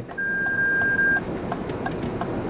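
A single steady electronic warning beep about a second long from the 2023 Lexus RX 350h's cross-traffic alert, signalling that cross traffic has been detected, over steady cabin road noise.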